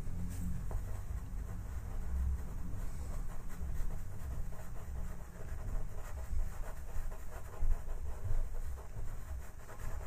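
Faber-Castell Pitt pastel pencil worked over paper in short, irregular strokes, a soft scratching and rubbing with uneven low bumps.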